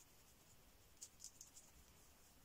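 Near silence, with a few faint, brief scratches about a second in: a small paintbrush mixing acrylic paint on the damp paper sheet of a stay-wet palette.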